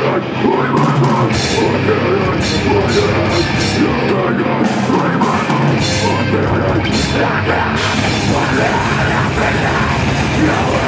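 Live metalcore band playing loud: distorted electric guitars and bass over a drum kit, with repeated cymbal hits.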